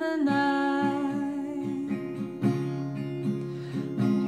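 Fingerpicked acoustic guitar with a woman's voice holding a long note over it through about the first half; plucked notes keep ringing after the voice drops back.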